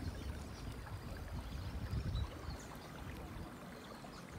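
Quiet river water lapping close by as an inner tube drifts slowly downstream, over a low rumble that swells a little around the middle.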